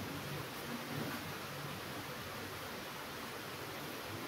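Faint steady hiss with light handling noise as strips of masking tape are peeled off a freshly painted wall.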